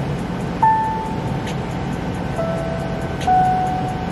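A simple melody of single, held, pure-toned synth notes played one at a time: a higher note about half a second in, then two lower notes near the end. It is a melody idea being sketched out before harmonising. A steady low hum runs underneath.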